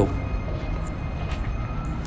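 Steady low rumble of street traffic, an even noise with no distinct events.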